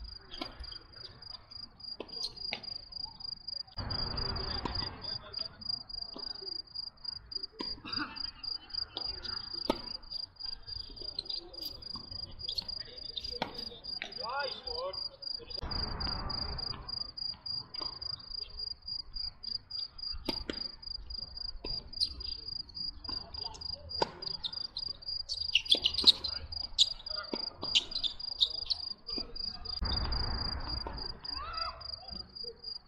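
Crickets chirping in a steady, high-pitched pulsing trill, over the sharp knocks of tennis balls struck by rackets and bouncing on a hard court during rallies.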